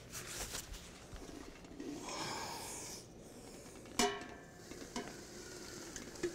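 Liquid nitrogen hissing and sizzling as it is poured from a dewar into a steel pot and boils off on contact, strongest for about a second around two seconds in. A single sharp metallic clink about four seconds in.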